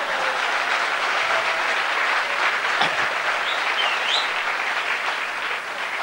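Audience applauding: a steady, dense clatter of many hands clapping that eases off slightly near the end.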